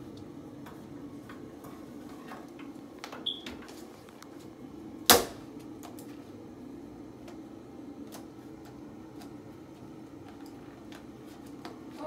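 Light clicks and taps of plastic action figures being handled and posed on a cardboard backing card, with one sharp loud knock about five seconds in. A low steady hum runs underneath.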